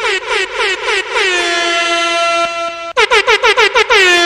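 Air horn sound effect: a quick string of short toots, then one long held blast, then another quick string of toots near the end. Each blast begins with a brief drop in pitch.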